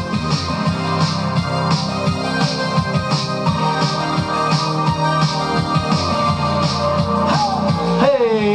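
Upbeat pop music with a steady beat and keyboard chords.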